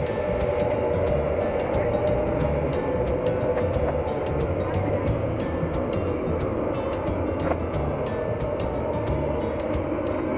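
Steady mechanical drone of aircraft machinery heard inside a cargo hold, with a hum and frequent light clicks and rattles throughout.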